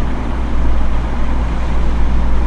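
A steady low rumble with an even hiss over it, unchanging throughout.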